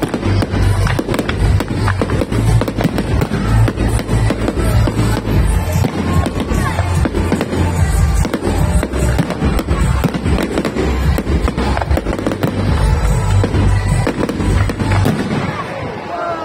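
A dense barrage of aerial fireworks: rapid, overlapping bangs and crackling bursts from many shells at once, easing off near the end.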